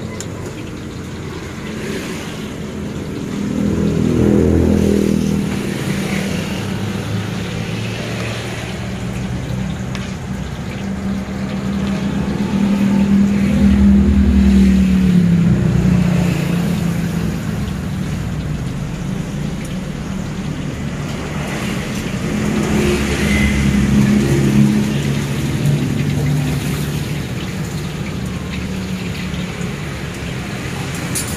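Road traffic: motor vehicles passing one after another, their engine note swelling and fading as each goes by, loudest about four seconds in, around thirteen to fifteen seconds, and again around twenty-three seconds.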